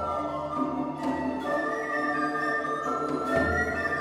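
Recorder ensemble playing slow, sustained chords in several voices, the notes changing every second or so over a low held note, with a low thud about three seconds in.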